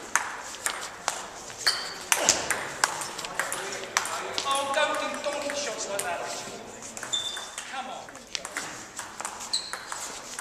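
Table tennis ball clicking off bats and the table during rallies: many sharp clicks at irregular intervals.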